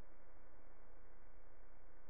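Faint, steady low rumble of a helicopter in flight.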